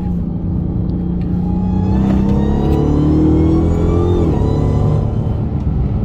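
Dodge Charger SRT Hellcat's supercharged 6.2-litre HEMI V8 accelerating hard at highway speed, heard from inside the cabin. The engine note and the supercharger whine rise steadily for about four seconds, then fall away.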